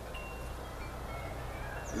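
A few faint, brief high chiming notes, scattered through the pause, over a low steady hum.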